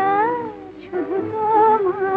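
Film song: a female voice singing drawn-out, wavering notes over instrumental accompaniment, one phrase fading out and a new one starting about a second in.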